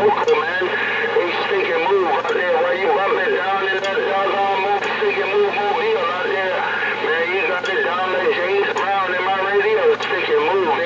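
Voices coming in over a CB radio on channel 6, continuous and indistinct, with a tinny, cut-off sound and a steady hum underneath.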